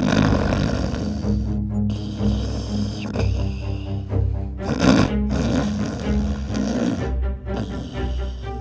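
Cartoon snoring sound effect, one snore about every two seconds, over background music.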